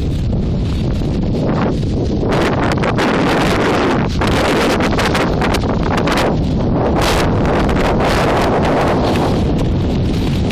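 Strong, gusty wind ahead of an approaching thunderstorm, buffeting the microphone. It surges harder through the middle, with the heaviest gusts a few seconds apart, and eases a little near the end.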